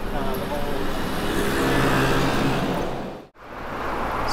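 Road traffic on a city street: a motor vehicle passes, its engine hum and tyre noise swelling about two seconds in. The sound cuts out abruptly for a moment near the end.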